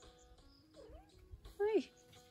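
A domestic cat meowing: a faint short call about a second in, then a louder meow that falls in pitch near the end.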